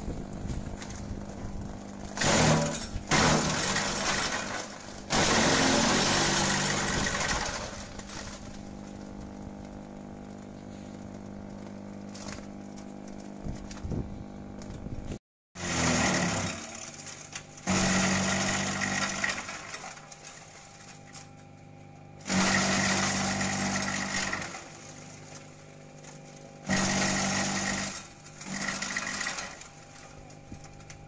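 Kelani Composta KK100 shredder's 2 hp electric motor running with a steady hum, broken by loud spells of chopping, about seven of them lasting one to three seconds each, as gliricidia branches are fed into the cutter. The sound cuts out for a moment about halfway through.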